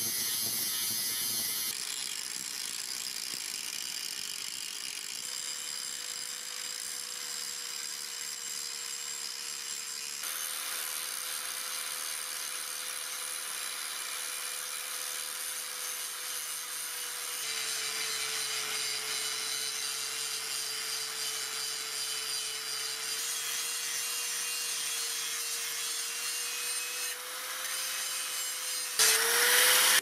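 Angle grinder running steadily, its abrasive disc grinding into a rusty iron bar to shape a knife blade, a hiss of grinding over the motor's whine. The whine shifts slightly in pitch a few times, and there is a short louder burst with a rising pitch near the end.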